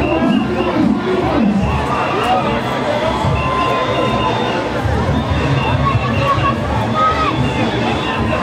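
Loud street-parade din: crowd voices and shouts over Junkanoo music, with drums beating low and a few long held horn notes.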